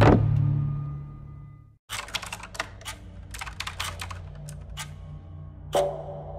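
Computer keyboard being typed on: a run of irregular sharp key clicks starting about two seconds in, over a low steady drone. Before it, a heavy low hit dies away into a second of silence.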